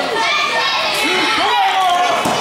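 Children in the crowd yelling and chattering, several high voices overlapping without a break.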